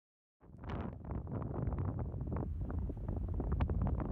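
Wind buffeting the microphone of a camera carried on a flying paraglider: a rumbling, crackling rush of airflow noise that cuts in abruptly about half a second in.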